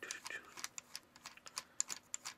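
Plastic spin wheel on the base of a Barbie ballerina toy being turned by thumb, clicking irregularly several times a second as the doll spins.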